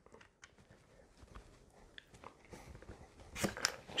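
Rigid injection-molded plastic box magazine scraping and clicking against a paintball marker's magwell as it is wiggled loose, with a few sharper knocks near the end as it comes free. The magazine is stuck tight in the magwell.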